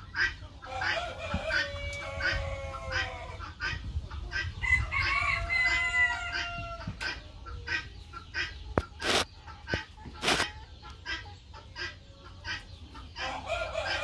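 A flock of chickens clucking and calling, with drawn-out pitched calls in the first half. Two sharp knocks come about two-thirds of the way through.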